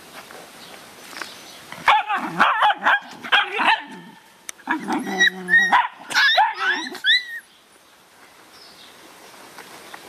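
Dogs barking and yelping in a busy, overlapping run of calls that starts about two seconds in and stops about seven seconds in, ending on a few short rising-and-falling yelps.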